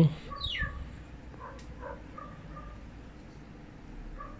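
Faint bird chirps in the background: a quick falling call about half a second in, then a few short soft notes, over a quiet steady hum.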